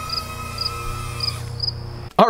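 A cricket chirping in short, regular pulses about twice a second, over a steady high-pitched hum that cuts off about a second and a half in.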